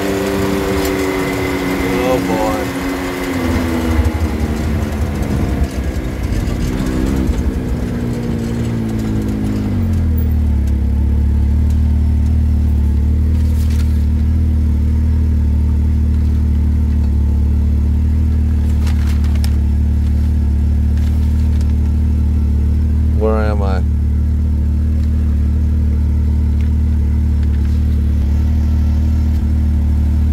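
Side-by-side UTV engine slowing, its pitch falling over the first ten seconds, then idling steadily with a low hum while the machine stands still.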